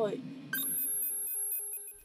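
Electronic beeping: a steady high-pitched tone with a rapid pulsing beep pattern, starting suddenly about half a second in and stopping just before the end.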